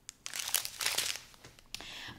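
Small clear plastic bags of diamond-painting drills crinkling as they are handled, for about a second.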